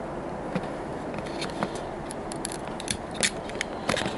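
Fingers handling a plastic model railway wagon and prising at its removable canopy: scattered small plastic clicks and taps, more frequent in the second half.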